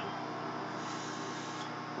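Microwave oven running, a steady even hum as it heats a bowl of hot cereal.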